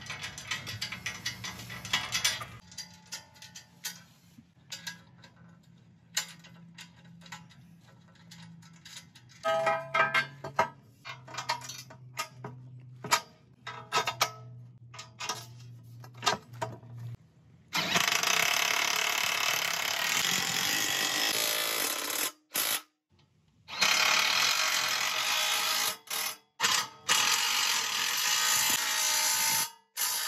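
Ratchet wrench clicking in short runs as bolts on an aluminium base plate are tightened by hand. A little past halfway a cordless drill starts and runs in long, steady pulls, with one short stop and a few brief pauses.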